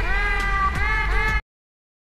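Cat meows over a rhythmic backing music track, cutting off abruptly about one and a half seconds in.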